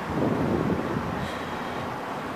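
Road traffic passing on a city street, a steady rumble that swells briefly about half a second in.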